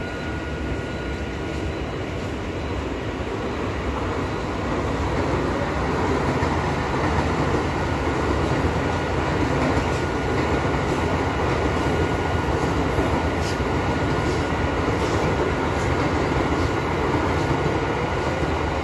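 Mumbai suburban local train running along the track, a steady rumble and rattle of wheels and carriages heard from on board, growing louder over the first few seconds and then holding steady.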